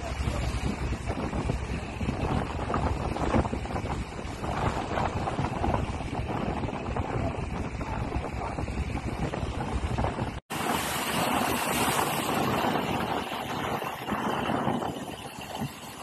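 Wind buffeting the microphone over seawater rushing and breaking across the swamped deck of a foundering dredger. About ten seconds in, the sound drops out for a moment, then comes back brighter, with less low rumble.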